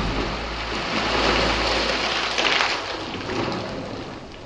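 Water spouting up from a spring in a rocky hollow and splashing back into the pool: a rushing, splashing hiss with a brief surge about halfway through, fading toward the end.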